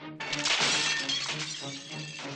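A sudden crash of shattering glass about a quarter of a second in, dying away over about a second, over music with steady low sustained notes.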